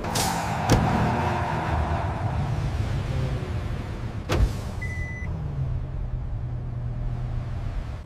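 Car driving at speed: a steady low engine drone under a rushing noise that fades over the first few seconds. Two sharp clicks come through, one within the first second and one about four seconds in.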